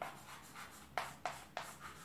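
Chalk writing on a blackboard: a series of short strokes and taps, one at the start and four in quick succession in the second half.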